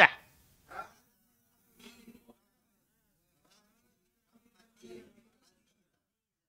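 A mostly quiet pause with three faint, brief murmured voice sounds spread through it, low and buzzy in tone.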